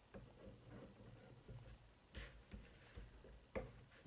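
Near silence with a few faint light clicks and taps as small embellishments are picked up and pressed by hand onto a card gift tag, the sharpest click near the end.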